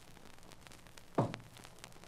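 A pause in the dialogue filled with the steady hiss of an old radio recording, with one short, sharp sound about a second in.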